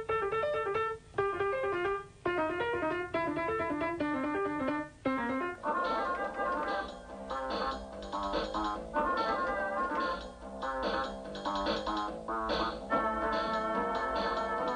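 Small portable electronic keyboard played as a jazz vamp in D minor. It starts with short repeated licks separated by brief pauses, and from about six seconds in becomes a denser run of notes over held chords.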